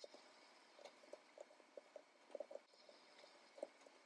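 Very faint, irregular soft taps, about a dozen: a handled foam ink blending tool dabbing ink through a plastic stencil onto cardstock.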